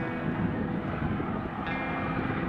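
Boat engine running steadily, a low hum with a faint thin whine over it, with wind buffeting the microphone.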